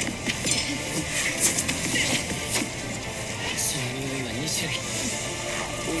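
Soundtrack of an anime fight scene: background music with a few sharp hit sound effects, and a character's voice speaking in the second half.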